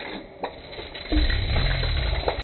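Handling of a homemade PVC marble gun just after a shot: two sharp clicks near the start, then a loud low rumble on the microphone from about a second in.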